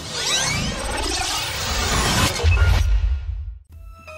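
A whoosh-and-shatter transition sound effect over electronic music, with a deep bass boom about two and a half seconds in. It all fades out just before the end.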